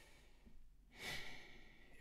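A man's audible breath about a second in, a short airy rush in an otherwise near-silent pause.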